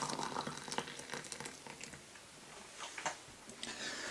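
Freshly boiled water poured from a kettle into a ceramic mug, the pour fading out over the first couple of seconds, with a few light clicks near the end.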